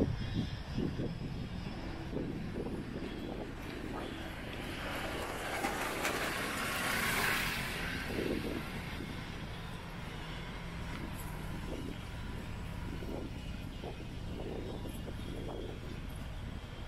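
Urban street ambience with a steady low rumble of traffic; a passing vehicle swells to its loudest about seven seconds in and fades away.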